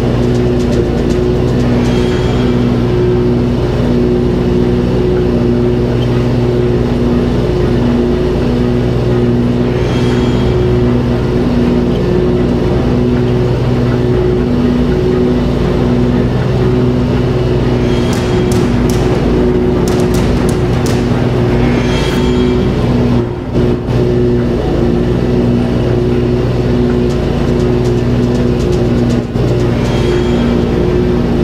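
Zero-turn riding mower engine running under load while it cuts tall weeds, with music playing over it. A few brief crackles come near the end.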